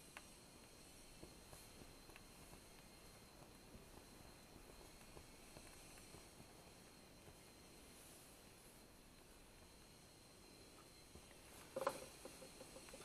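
Near silence: faint room hiss with a few small ticks, then a short burst of rustling clicks near the end as a tea bag is handled.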